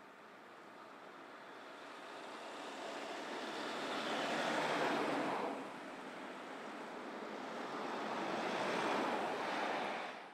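Road traffic passing close by with no siren: the tyre and engine noise of a Mercedes van ambulance swells and passes about five seconds in, then rises again as a 4x4 response vehicle and following cars pass near the end.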